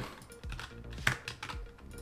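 Several separate key presses on a Logitech G815 low-profile mechanical keyboard as Blender shortcuts are typed, over faint background music.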